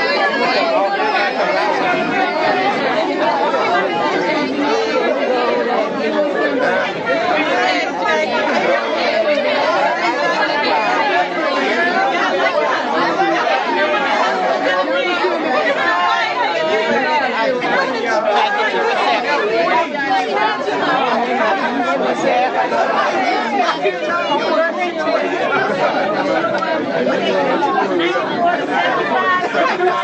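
Many people talking at once, a steady babble of overlapping voices with no single speaker standing out.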